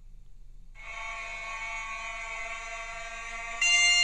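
Celtic bagpipe music playing through a smartphone's speaker. A steady drone comes in about a second in, and the music turns much louder and fuller near the end.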